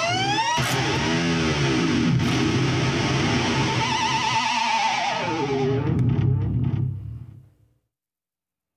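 Distorted Fender Stratocaster electric guitar worked with the tremolo arm in dive-bomb style. The notes swoop upward in pitch, then a wavering held note dives down about five seconds in and rings out, fading away near the end.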